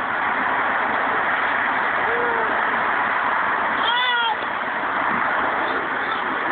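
A steady loud hiss throughout, with one short high-pitched squeal from a toddler about four seconds in, rising then falling in pitch.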